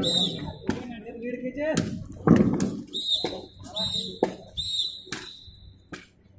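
Sharp knocks of single sticks striking in a sparring bout: a handful of hits, roughly a second apart.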